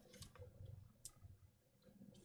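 Near silence: room tone with a few faint clicks in the first second.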